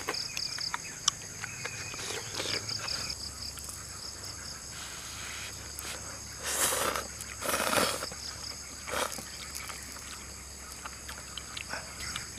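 Slurping and eating instant noodles, with two loud slurps a little after the middle and a shorter one soon after, over a steady pulsing chirp of crickets.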